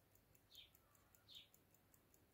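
Near silence: room tone, with two faint short high chirps about half a second and a second and a half in.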